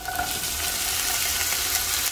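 Diced bell pepper tipped into hot ghee in a nonstick pan, setting off a steady sizzle that starts suddenly as the pieces land.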